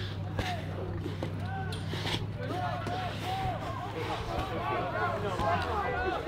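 Spectators' voices talking and calling out at a fight, with a few sharp knocks, over a steady low hum that stops near the end.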